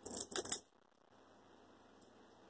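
Crunching bites into a puffed corn roll snack: a few short, crisp crunches in the first half-second.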